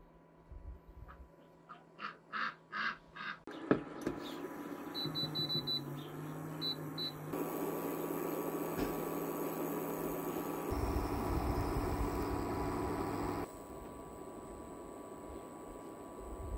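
Soft squishing of mashed-potato dough being pressed and rolled between hands, then a click and a few short high beeps from an induction cooktop's touch buttons. The cooktop's cooling fan then runs with a steady hum, which stops suddenly near the end.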